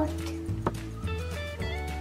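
Background music: soft steady held notes over a low steady hum, with a single sharp click about two-thirds of a second in.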